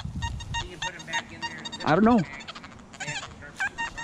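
XP Deus metal detector with an X35 coil giving short, broken target tones in its deep full-tones program as the coil sweeps over a clad half dollar buried about ten inches deep. The owner is baffled by this response after changing frequencies.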